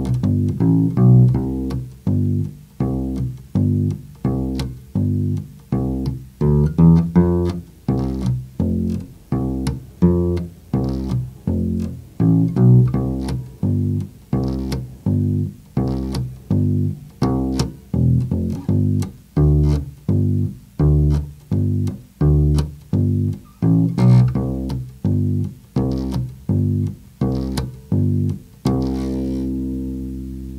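Solo electric bass guitar played fingerstyle: a simple country bass line in C, steady single notes alternating root and fifth, with stepwise walk-ups leading into each chord change. It ends on a longer, ringing held note.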